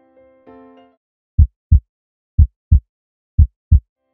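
Soft keyboard music ends in the first second, followed by three double low thumps about a second apart, a lub-dub heartbeat sound effect.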